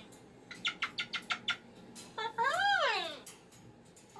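A white cockatoo vocalizing: a quick run of about eight short chirps, then a long whining call that rises and falls in pitch, the loudest sound here, in a complaining mood.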